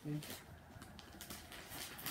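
One short spoken word, then faint rustling and light handling ticks.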